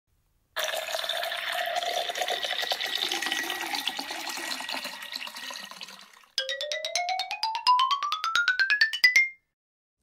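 Wine poured from a glass bottle into a wine glass: a splashing pour for about six seconds, then a second pour with rapid, regular glugs and a pitch that rises steadily, stopping suddenly just after nine seconds.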